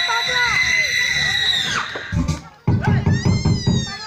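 Recorded dance music with voices calling over it; the music stops about two seconds in. Loud voices follow, with a high drawn-out shout or scream near the end.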